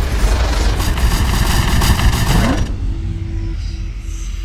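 Sound effects of an animated logo intro: a loud, dense crashing rush with a short rising sweep that cuts off suddenly near three seconds in, leaving a low rumble with a steady hum as the logo settles.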